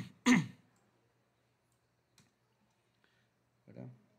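A man coughs twice in quick succession, clearing his throat. A faint click follows about two seconds in.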